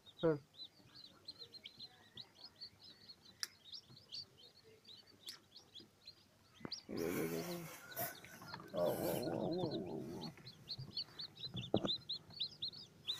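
Newly hatched chicken chicks peeping without pause, a rapid run of short high-pitched peeps. A person's voice and rustling break in from about seven to ten seconds in.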